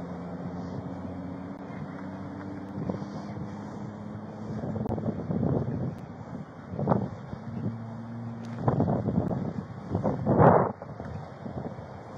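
Highway traffic going past close by, heard through a body-worn camera's microphone with wind on it: a steady low engine hum for the first few seconds, then several vehicles swelling up and fading away.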